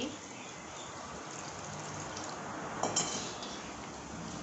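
Lukewarm water pouring from a small steel bowl into a large steel mixing bowl of flour, a steady trickle and splash, with one short sharp sound near three seconds in.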